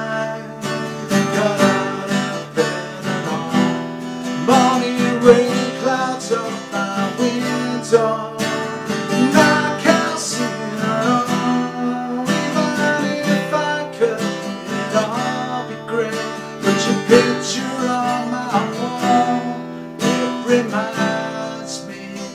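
Acoustic guitar strummed steadily in a regular rhythm, with a man singing a melody over it.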